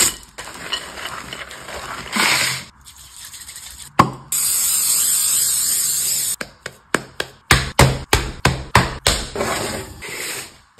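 Cookie-making sounds: chocolate chunks falling into dough in a glass bowl, then after a sharp click a steady hiss of spray onto an aluminium sheet pan lasting about two seconds. After that comes a run of sharp taps and clicks, about two or three a second.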